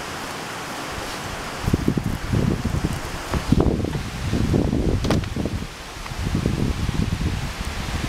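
Steady rush of creek water. From about two seconds in it is covered by irregular low rumbling and rustling on the microphone, which comes and goes with a brief lull near the end.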